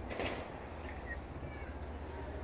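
A steady low mechanical hum with a regular pulse, with a brief rustling burst near the start and a few faint, short, high chirps.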